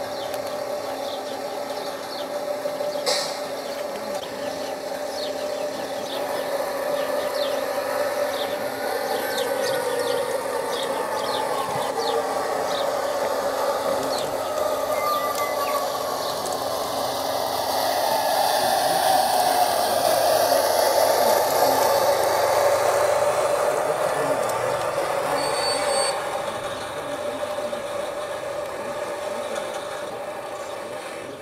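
G-scale model shunting locomotive running along garden-railway track: a steady hum of its electric motor and gearing with faint clicks of the wheels over rail joints and points, growing louder in the second half and dropping off a few seconds before the end.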